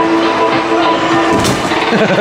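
Arcade game music with held notes. About a second and a half in comes a short thud: a punch landing on the Combo Boxer machine's punching bag. Afterwards the music turns into jumpy, bouncing tones.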